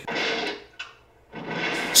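A short laugh, then after a brief silence a rising rush of noise as a building explosion in the film soundtrack begins, about a second and a half in.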